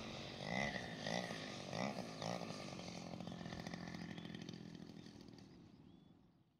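Small two-stroke petrol engine (3W 70cc) of a 1/5-scale RC SBD Dauntless model plane, throttled back on landing approach: its pitch wavers for the first couple of seconds, then settles into a steady low drone that fades away near the end.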